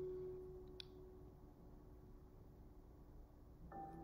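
Near silence: a faint steady tone fading away over the first second and a half, with one small click about a second in.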